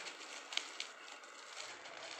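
Bubble wrap rustling and crinkling as it is unwrapped by hand, with a few light crackles, one sharper about half a second in.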